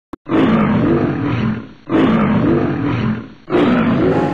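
A lion roaring three times, each roar about a second and a half long, with the third running on past the end.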